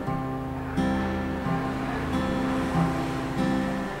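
Acoustic guitar playing a chord progression, with a new chord or bass-and-strum stroke coming in roughly every three-quarters of a second and the strings ringing on between strokes.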